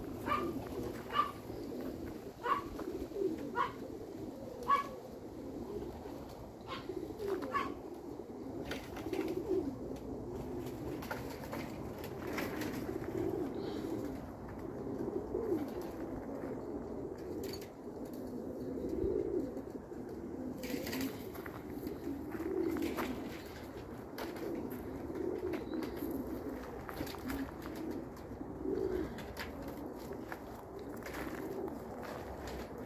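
Domestic pigeons cooing steadily, a continuous low warbling. In the first eight seconds there is also a run of short, sharp high sounds, a few per second.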